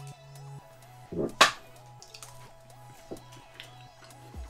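Background music plays under a single sharp crunch about a second and a half in: a bite into a piece of deep-fried soft shell crab sushi roll.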